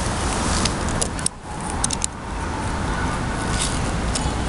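Steady outdoor background noise with a low, uneven rumble and a few light clicks, with a brief drop in level about a second and a half in.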